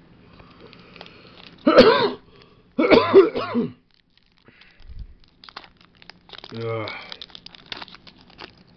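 A person coughing: two loud coughs about two and three seconds in, then a softer cough a few seconds later. Light crinkling of a foil booster-pack wrapper being handled in the second half.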